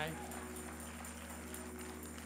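A pause in a preached sermon in a church: the last word dies away, leaving a steady low hum from the sound system under a faint held chord from a church keyboard, which fades near the end.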